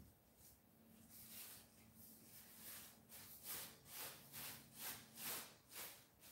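Faint, scratchy swishes of a nearly dry Chinese brush dragged across mulberry paper in short strokes. They are sparse at first, then come about two a second over the second half.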